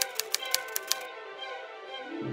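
Typewriter keystroke sound effect, about six quick clicks in the first second and then stopping, over bowed string music.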